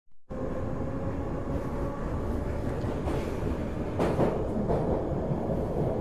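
Metro train running: a steady low rumble with a faint high whine, and a louder clunk about four seconds in.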